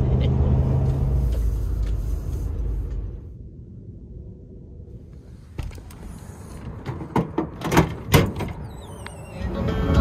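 Road and engine noise inside a Ford F-150's cab, a steady low rumble for the first three seconds that then drops away. About seven seconds in come a few loud gusts of wind buffeting through the open window, and music starts near the end.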